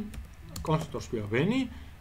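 Computer keyboard typing: a run of quick key clicks, with a man talking over part of it.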